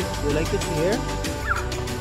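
A toddler making short wordless vocal sounds, quick rising squeaks and calls, over steady background music.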